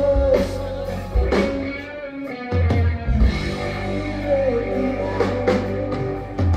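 Psychedelic/progressive rock band playing live: drum kit with several cymbal crashes, electric guitars, bass and keyboards, and a sung vocal line held over them.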